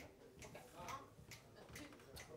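Faint, evenly spaced ticks, about two a second, tapping out a steady tempo: a count-in just before a jazz quartet starts to play.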